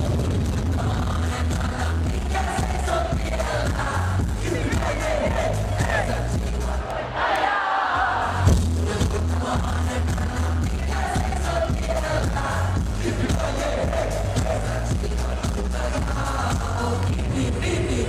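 Live hip-hop through a concert PA in an echoing ice hall, picked up on a low-quality camera microphone in the audience: a heavy bass beat with a rapper's vocals over it and the crowd joining in. The bass drops out briefly about seven seconds in, then comes back with a loud hit.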